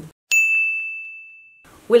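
A single bell-like ding sound effect: one clear high tone that strikes suddenly, rings and fades over about a second and a half, then cuts off.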